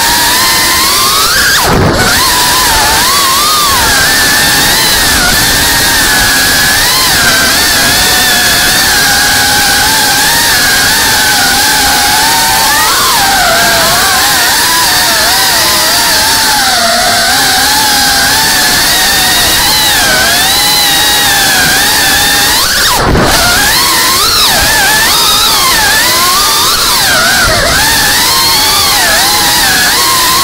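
FPV quadcopter's motors and propellers whining, the pitch rising and falling with the throttle, with sharp drops about two seconds in and again near the end, as the throttle is chopped.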